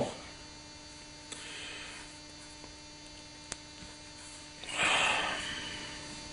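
Steady low electrical mains hum. There is one faint click about halfway through as a hex key works a small screw on a metal welder collet, and a brief soft rustle near the end.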